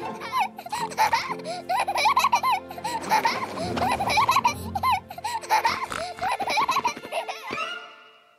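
A high-pitched cartoon voice giggling over and over, with background music underneath; the sound fades out near the end.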